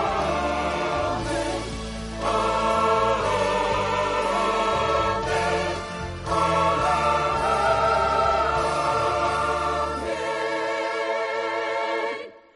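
Mixed choir singing a gospel song in long held chords over an orchestral accompaniment. About ten seconds in the low accompaniment fades out, leaving the voices holding a final chord with vibrato.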